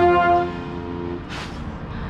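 Marching band brass, with a trombone right at the microphone, holding a loud sustained chord that cuts off about half a second in, while a lower note lingers to just past a second. A brief rush of hiss follows.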